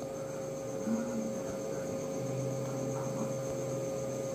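Steady background electrical hum, with a low part that grows a little stronger about halfway through.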